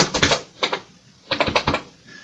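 Computer keyboard keys being typed: a few quick keystrokes at the start, one more just after half a second, and a short run of clicks about a second and a half in.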